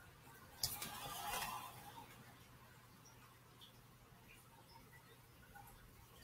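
Tarot cards being shuffled by hand: a sharp snap about half a second in, then a second or so of cards rustling and sliding, followed by faint light ticks.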